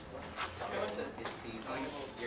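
Indistinct talking from people in the room, with a few light knocks.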